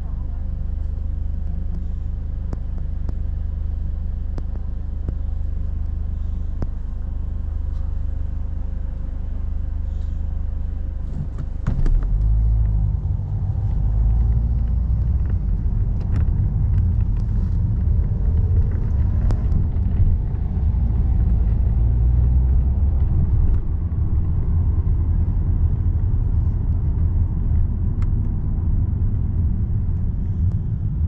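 Car cabin sound: a steady low hum while the car waits at a red light, then about twelve seconds in the car pulls away, and a louder low rumble of engine and road noise carries on as it drives.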